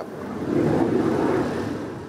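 A road vehicle passing by, its engine and tyre noise swelling to a peak about a second in and then fading.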